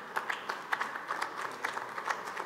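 Audience applauding steadily, with many individual claps standing out.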